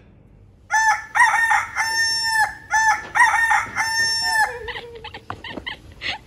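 A recorded rooster crow, played twice about two seconds apart. Each crow is a few short notes ending in one long held note. A short falling tone and a few clicks follow near the end.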